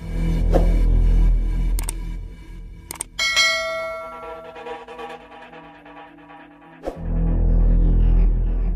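Electronic DJ sound-check music for a carnival sound system: heavy bass for the first couple of seconds, then the bass drops out and a bell-like chime rings and slowly fades, before the heavy bass comes back near the end.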